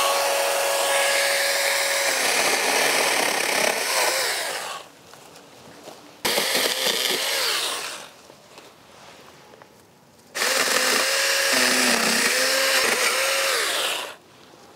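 Saker 20-volt cordless mini electric chainsaw running in three bursts while cutting through the stems of a small tree at its base: a long burst of about five seconds, a short one about six seconds in, and another starting about ten seconds in. The motor's whine dips as the chain bites into the wood.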